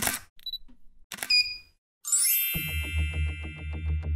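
Edited-in sound effects: a short burst of noise at the start, a bright ding about a second in, and a shimmering chime near two seconds. Electronic music with a steady bass and a fast pulsing beat follows.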